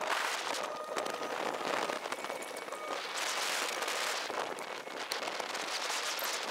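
Sped-up on-board audio from a fishing boat: a dense crackling hiss with no low end, swelling and fading every second or so.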